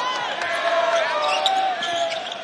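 Basketball dribbled on a hardwood court, faint knocks under a steady murmur of the arena crowd.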